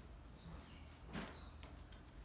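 Basset hound puppy chewing and gnawing quietly, with one louder soft crunch about a second in.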